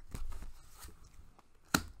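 Tarot deck being shuffled by hand: a run of light card clicks and snaps, with one sharper snap near the end.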